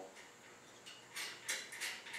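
A few light metallic clinks, about three of them a third of a second apart in the second half: a steel bolt and nut being handled and fitted through a caster's mounting plate and welded flange.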